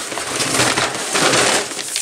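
Paper gift bag and wrapping paper rustling and crinkling as a gift-wrapped box is pulled out of the bag, one continuous stretch of crinkling.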